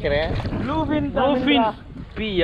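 A man's voice talking close to the microphone, over a steady low rumble of pond water and wind on a camera held at the water's surface.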